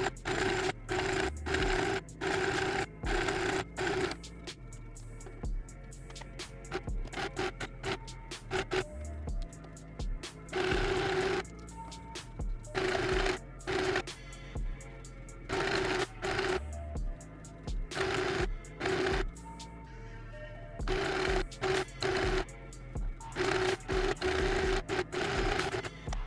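Portable mini sewing machine stitching a satin strap in many short bursts, starting and stopping again and again with pauses of up to a second or two.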